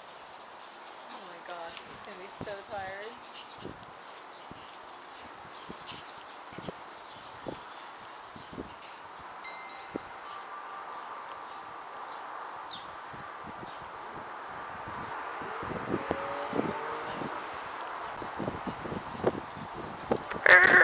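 Quiet outdoor background with scattered soft taps and thuds from a Japanese Chin and an Italian greyhound wrestling and running on artificial turf.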